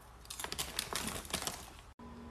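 A foil snack bag of popcorn crinkling in the hand while popcorn is eaten from it: a quick, irregular flurry of crisp clicks lasting about a second.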